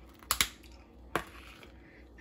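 Plastic tub lid being handled: two quick sharp clicks about a third of a second in, then a single click a little over a second in, as the lid is pried off and set down on the counter.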